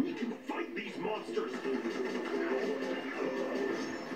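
Animated film trailer playing back: character voices with music underneath.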